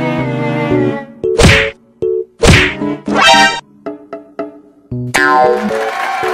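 Edited-in cartoon sound effects over a bouncy comic music track: three sudden sweeping hits in the middle, then a fuller swell near the end, with short plucky notes underneath.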